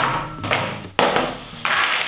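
Sewing supplies set down one by one on a cutting mat on a wooden table: three knocks about half a second apart, then a short swish near the end.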